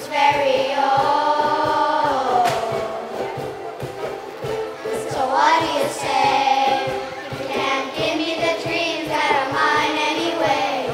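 A children's choir singing with several ukuleles strumming a steady rhythm beneath. The voices hold long notes, with one upward slide about halfway through.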